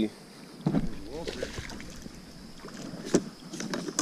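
Sounds aboard a small fishing boat on the water while a fish is fought: a brief faint voice about a second in, then a single sharp knock about three seconds in, over steady background hiss.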